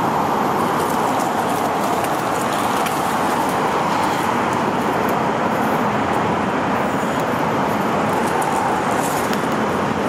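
Steady, unbroken freeway traffic noise: a constant wash of tyres and engines from cars on the adjacent interstate.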